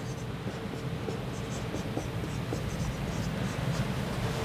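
Marker pen writing on a whiteboard: a run of short, irregular scratching strokes as figures are written.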